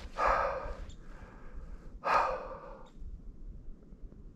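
A person breathing out heavily twice, about two seconds apart.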